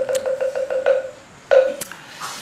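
Wooden moktak (Buddhist wooden fish) struck in a quickening roll of about eight ringing strokes that die away about a second in, then a single louder stroke near the end, the usual close of a chanted verse.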